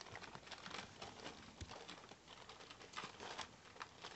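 Zuchon puppies scuffling on newspaper: faint, scattered rustling and scratching of paws and paper as they play-fight.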